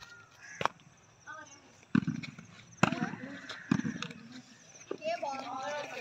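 A volleyball being hit by hand, several sharp smacks about a second apart, with boys calling out near the end.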